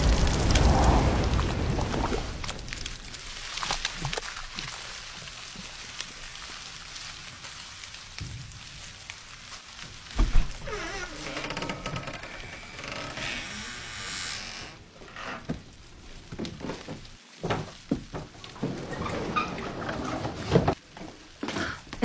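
The low rumble of an explosion fades over the first couple of seconds. Then scattered drips, splats and small knocks of wet debris follow, with one sharper thunk about ten seconds in.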